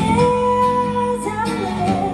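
A woman singing live into a microphone, holding one long note for about a second before the melody moves on, over acoustic guitar accompaniment.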